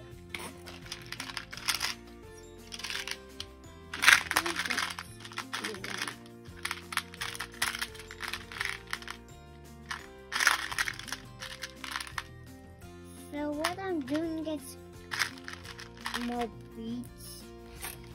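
Background music throughout, with several short bursts of small plastic beads rattling and clicking as a hand rummages through a plastic bead organizer box.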